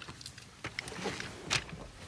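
Faint rustling with a few light clicks and a sharper click about one and a half seconds in: handling noise as someone settles into a pickup truck's driver's seat.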